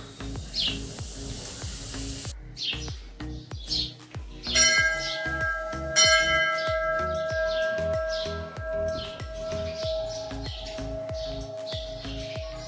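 A temple bell struck twice, about a second and a half apart near the middle, each strike ringing on with a metallic tone that slowly fades. Birds chirp in the background.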